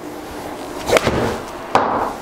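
A pitching wedge swung at a Titleist Pro V1x golf ball in an indoor golf simulator: two sharp impacts, about a second in and near the end, from the club striking the ball and the ball hitting the impact screen.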